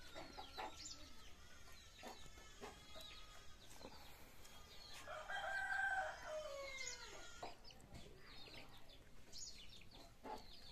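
A rooster crows once, about halfway through: a single long call that falls at its end. Chickens cluck and small birds chirp around it.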